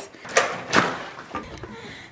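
Front door being opened: two sharp clunks about half a second apart, the latch and the door.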